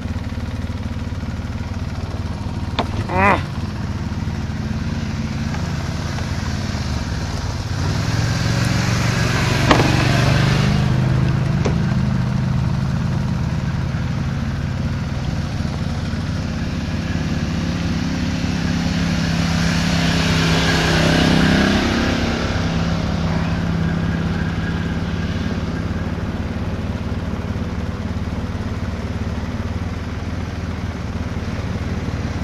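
Polaris ATV engine idling steadily, with other ATV engines coming closer and getting louder twice, about a third of the way in and again past the middle, their pitch rising and then falling.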